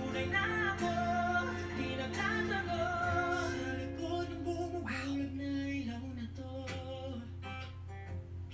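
Live acoustic performance playing back: a male voice sings held, wavering notes over guitar. About five seconds in a short noisy burst cuts across it, and the guitar carries on with plucked strokes while the singing fades back.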